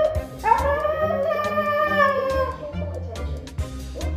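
A dog howling one long 'awoo' to beg for food, starting about half a second in, rising at the onset and sliding down at the end, over background music.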